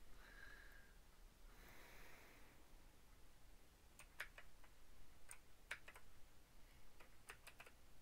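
Near silence: room tone with a few faint, sharp clicks from a computer mouse and keyboard. The clicks come in small clusters about four seconds in, again a second or so later, and near the end.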